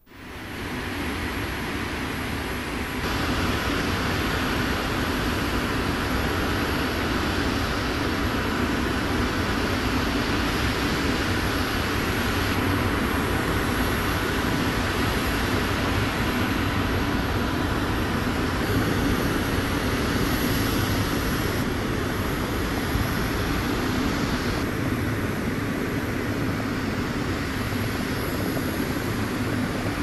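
Steady aircraft engine noise on an airport apron, fading in over the first second.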